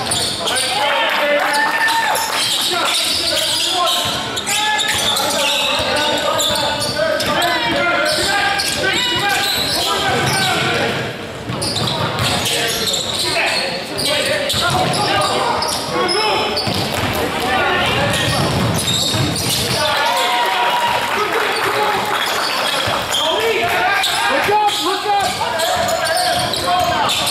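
Basketball game sounds echoing in a gymnasium: a ball dribbling on the wooden court under continual shouting and chatter from players and spectators.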